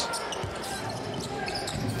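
A basketball bouncing on a hardwood court, a couple of dull thumps, over the general noise of the crowd in an arena.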